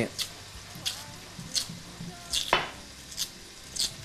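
Squid sizzling as it sautés in a frying pan, a steady hiss. About six sharp clicks of a chef's knife on a plastic cutting board, dicing tomato, are heard over it.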